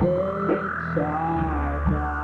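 Live indie rock band playing an instrumental passage: electric keyboard chords changing about once a second over steady bass, with drums and electric guitar and a couple of sharp drum hits.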